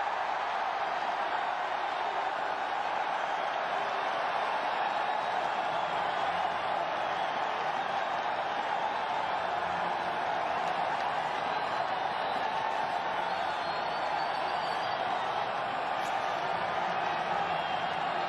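Stadium crowd cheering steadily for an interception returned for a touchdown.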